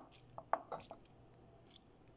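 Cooked rice squished by hand out of a white wrapping into a pan, with a few short, soft crackles and squelches in the first second.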